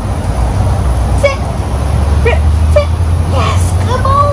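Low rumble of a passing road vehicle, swelling from about half a second in and easing off near the end, with a few brief faint blips over it.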